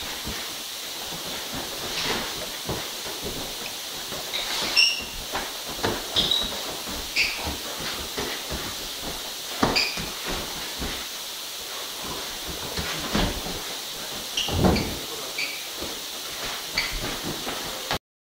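Sparring with boxing gloves: irregular dull thuds of punches landing on gloves, headgear and bodies, with short high squeaks of shoes on the floor over a steady hiss. The heaviest impact comes about three-quarters of the way through.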